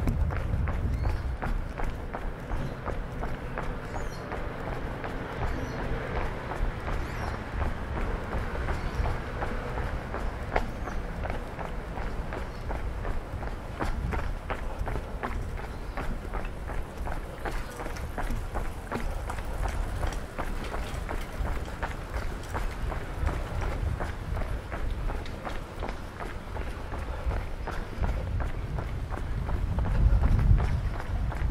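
Footsteps of a person walking at a steady pace on brick pavement, over street ambience.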